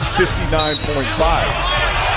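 Basketball game sound from an arena broadcast: a ball bouncing on the court over a steady crowd bed, with a short, high-pitched squeak about half a second in.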